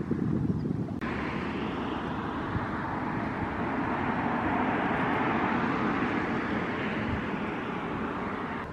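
Low wind rumble on the microphone, abruptly replaced about a second in by the even noise of road traffic, which swells to a peak midway and slowly eases off.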